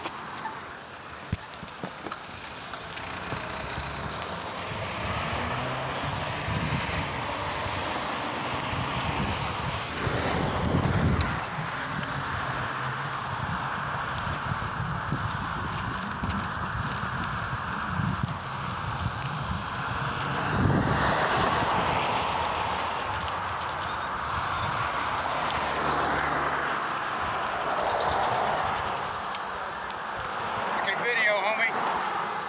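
Road traffic passing: a continuous wash of car engines and tyre noise, swelling as vehicles pass close about ten seconds in and again about twenty-one seconds in.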